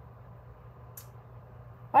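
Quiet room tone with a low steady hum and a brief faint hiss about a second in; a woman's voice starts at the very end.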